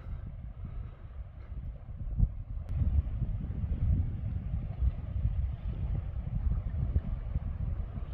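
Wind buffeting a mobile phone's microphone: an uneven low rumble that gusts harder from about two seconds in.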